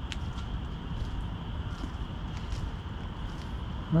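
Footsteps of someone walking on a paved sidewalk, faint regular steps over a steady low rumble.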